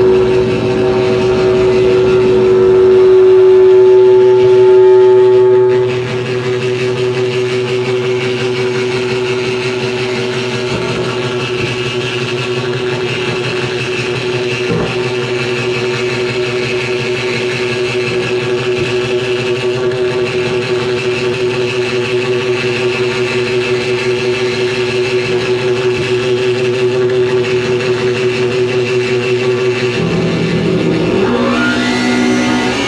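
Harsh noise electronics playing a loud, steady droning tone. About six seconds in it drops sharply in level and gives way to a fast-pulsing, buzzing drone with a hiss on top that runs on unchanged.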